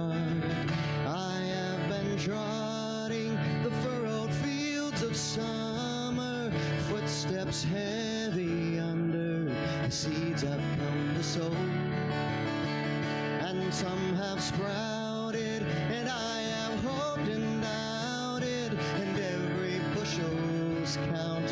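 A man singing into a microphone while strumming an acoustic guitar: a solo song with his own guitar accompaniment.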